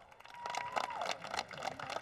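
Light, scattered applause from a small crowd: a quick, irregular run of hand claps.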